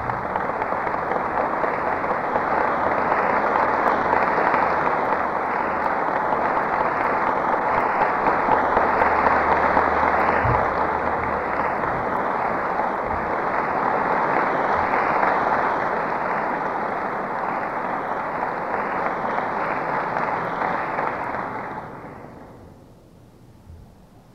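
Audience applauding steadily for about twenty seconds, then dying away near the end.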